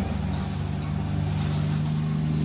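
Riding lawn mower engine running steadily at a constant speed.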